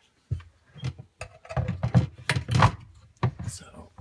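Hard plastic knocking and clattering as a Maytag dishwasher's lower filter housing is set onto the sump and shifted into alignment. A quick run of knocks comes thickest between about one and three seconds in.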